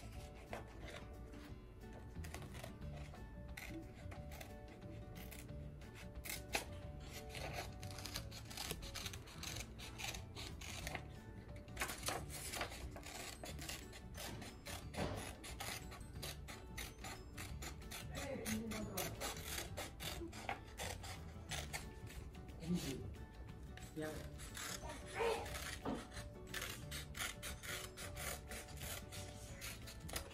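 Small scissors snipping through white construction paper in many short cuts, with the paper rustling as the sheet is turned to cut out a circle.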